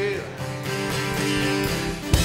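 Live worship band music between sung lines: an acoustic guitar strumming over sustained chords, with the singer's last held note dying away right at the start.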